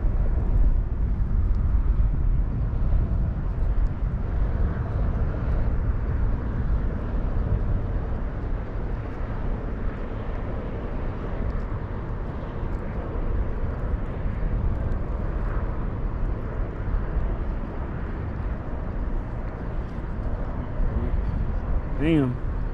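Wind buffeting the microphone: a steady, fairly loud low rumble that flickers with the gusts, with no voices.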